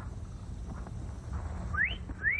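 A man's wolf whistle begins near the end: a quick, sharply rising whistle, over a steady low rumble.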